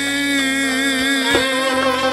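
Live Uzbek folk music from a small ensemble of long-necked lute, ghijak spike fiddle and doira frame drum, with one long held note and a few sharp strokes in the second half.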